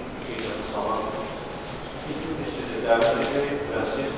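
Speech: a voice talking in a large, echoing hall, with no other sound standing out.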